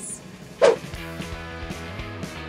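A brief, loud swish that falls sharply in pitch about half a second in, then background music with a steady beat starting about a second in.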